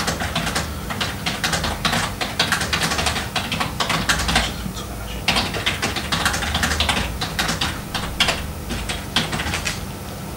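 Typing on a computer keyboard: rapid, irregular keystrokes with a few brief pauses.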